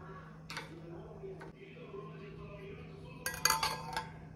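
A steel plate set down over a glass bowl as a lid, clattering and ringing with a quick run of metallic clinks near the end. A couple of light clicks come before it.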